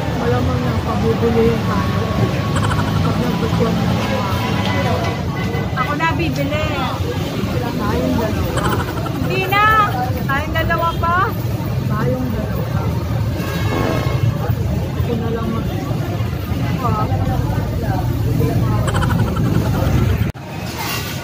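Voices talking indistinctly over a constant low rumble, with a voice clearest around the middle.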